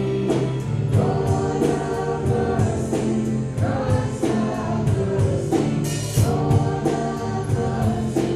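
Worship singers and a standing congregation singing a hymn together with instrumental accompaniment. The voices hold long notes over a steady bass line and a regular beat.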